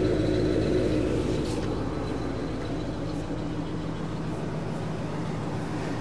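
1973 Mercury Marquis Brougham's V8 idling through its single exhaust, heard at the tailpipe: a very quiet, steady low exhaust note. It eases a little in level in the first couple of seconds, then holds even.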